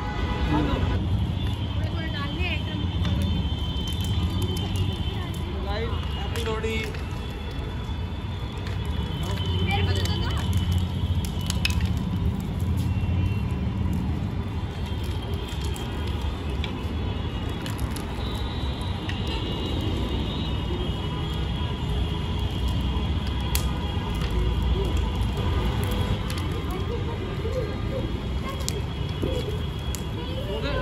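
Wood bonfire burning and crackling, with scattered sharp pops and snaps over a steady low rumble.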